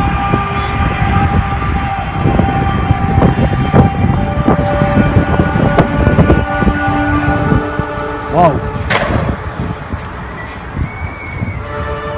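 A trumpet-like drone in the sky: several steady, horn-like tones held together over a heavy rumble of background noise. A short wavering, voice-like sound rises and falls about eight seconds in.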